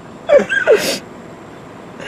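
Stifled laughter: two short falling vocal bursts ending in a sharp hiss of breath, then low background noise.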